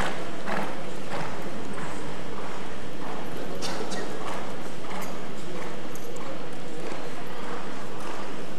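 Hoofbeats of a ridden Lipizzaner stallion trotting on the arena's sand footing, a hoofbeat every half second or so over a steady background hiss.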